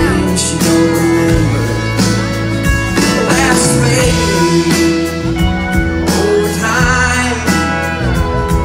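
Live country band playing an instrumental break, heard from the audience: acoustic guitar strumming over drums and bass, with long sliding, wavering lead lines from a pedal steel guitar.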